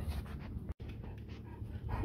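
Long-coated German Shepherd panting, with a steady low rumble underneath.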